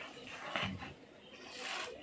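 Plastic courier mailer bag being rustled and torn open by hand, with a short, louder sound about half a second in and crinkling toward the end.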